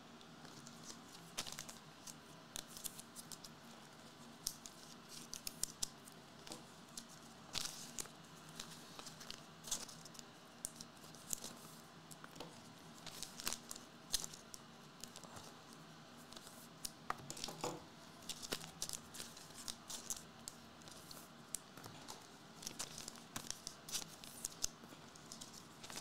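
Trading cards and their packaging being handled and sorted by hand: intermittent soft clicks, rustles and crinkles throughout.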